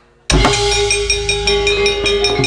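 A Javanese gamelan ensemble strikes up suddenly about a third of a second in. Bronze metallophone and gong tones ring on together over a steady beat of sharp knocks and drum strokes.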